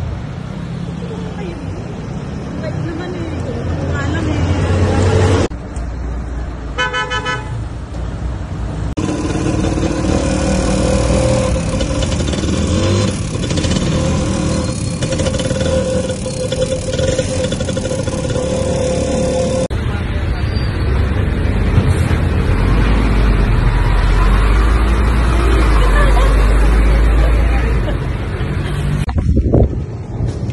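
Traffic noise with a vehicle horn sounding once, held for about a second and a half. This is followed by the engine and road noise of a motorcycle tricycle heard from inside its sidecar while riding, with a heavy deep rumble in the later part.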